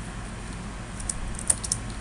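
Typing on a computer keyboard: a quick run of keystroke clicks in the second half, over a steady low hum.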